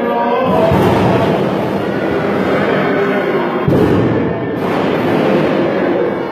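Greek Orthodox Holy Saturday chant drowned, about half a second in, by a loud, dense din of rapid banging and crowd noise, which surges again a little past halfway. This is typical of the First Resurrection rite, where the congregation bangs the wooden pews and seats.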